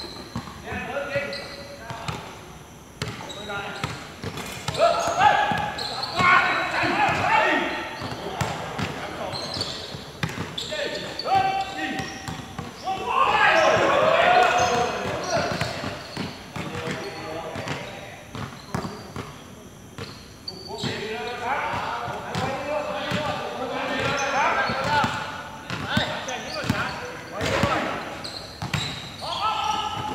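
Basketball players calling and shouting to each other during a game, louder in several stretches, over the repeated thuds of a basketball bouncing on the court.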